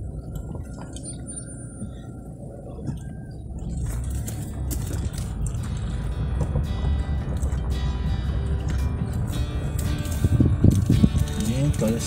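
Low rumble of a car driving slowly on a dirt road, heard from inside the cabin. About four seconds in, background music comes in over it and gets louder.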